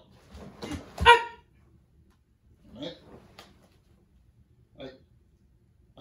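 A couple of dull thuds of bare feet on a wooden floor, then a short, loud karate kiai shout about a second in, as a step-in punch is made. A few shorter, quieter voice sounds follow.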